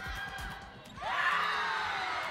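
Women's volleyball players and their bench cheering and shouting together as they win a rally, many high voices breaking out about a second in.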